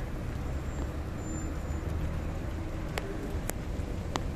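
Steady noise of city traffic on a rain-wet street, with a low rumble throughout and the hiss of the rain. Two sharp clicks come about half a second apart near the end.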